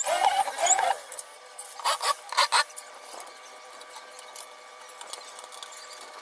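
Corded electric drill whining into laminated plywood for about a second, its pitch sliding up and down with the trigger, then two short loud bursts about two seconds in, followed by a faint steady hum.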